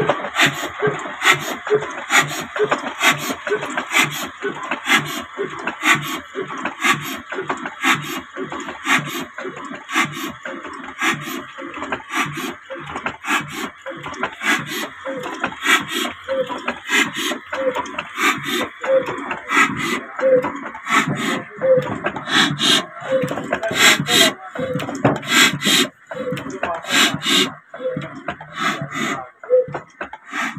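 Old stationary diesel engine with a large flywheel running at a slow idle, firing in a slow, regular beat of knocks with mechanical clatter from its valve gear between them.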